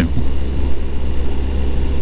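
Suzuki GSX-S750's inline-four engine running steadily as the motorcycle cruises, over a steady low rumble of wind and road noise.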